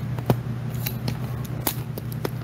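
A few short, sharp clicks over a steady low hum, the first one, about a third of a second in, the loudest.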